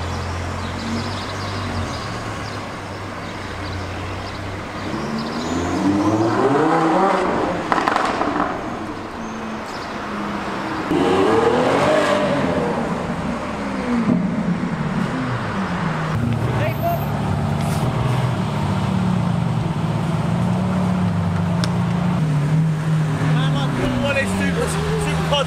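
Supercar engines revving in two rising-and-falling sweeps as cars pull away, about a quarter and about half of the way through. In the last third a Lamborghini Aventador roadster's V12 idles steadily close by.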